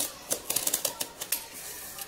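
Snap-off utility knife's blade slider clicking notch by notch as the blade is pushed out, a rapid run of clicks lasting about a second.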